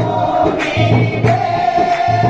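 A congregation singing a worship song together, with instruments keeping a steady beat of about two strokes a second under long held notes.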